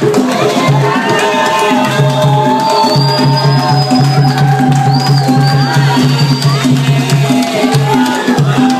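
Afro-Cuban dance music playing loudly: a voice sings long held, gliding notes over a repeating low bass line, with sharp wood-block-like percussion clicks keeping the beat.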